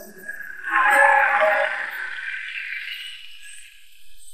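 Studio audience voices rising in a brief exclamation about half a second in, then fading away within two seconds.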